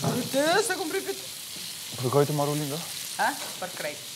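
Food sizzling in a frying pan as it is stirred with a wooden spatula. A person's voice comes in three times over the frying.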